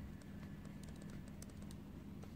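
Ballpoint pen writing small capital letters on paper: a quick, irregular run of faint ticks and scratches as the tip strokes and lifts. A steady low hum sits underneath.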